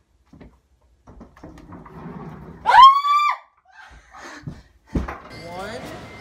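A girl's single high-pitched scream, about half a second long, about three seconds in. A thump follows about two seconds later.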